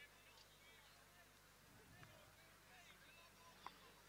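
Near silence, with faint distant voices and one faint click near the end.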